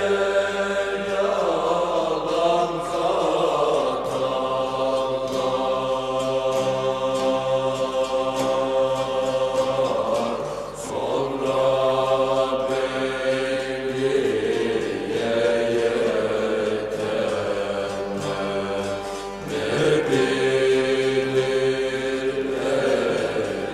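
Turkish folk song recording: a voice sings long held notes, chant-like, over a bağlama ensemble. The pitch moves every few seconds, and the phrases break briefly about ten seconds in and again near the end.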